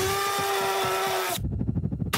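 Trailer sound effect: a steady whine that slides up briefly in pitch as it starts, holds for about a second and a half, then cuts off abruptly into a low rumble.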